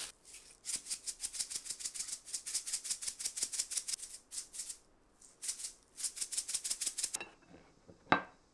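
Black sesame seeds rattling inside a plastic seasoning shaker, shaken rapidly in two runs with a short pause between them. The shaker is shaken on and on because the seeds barely come out.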